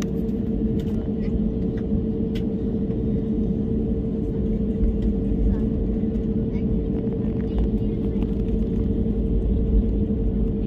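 Steady cabin noise of a jet airliner taxiing: a low rumble under a constant hum from the engines at idle and the cabin air system.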